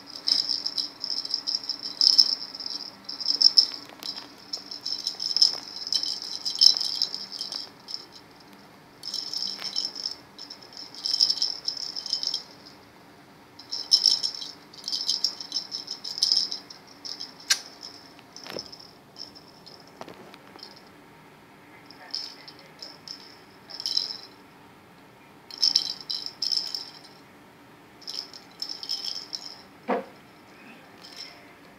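A bell inside a plastic jingle-ball cat toy rattling in short, irregular bursts as a kitten bats and grabs it, with brief pauses between bouts.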